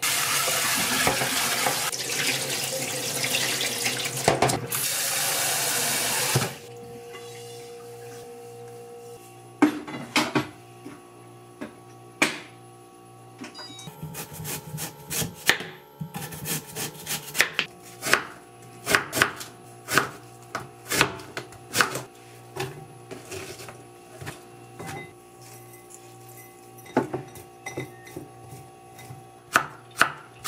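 Tap water running into a rice-cooker pot as rice is washed by hand, stopping after about six seconds. Then a knife cutting on a wooden cutting board: a few separate strokes slicing a white radish, then quicker, repeated chopping of green chili peppers.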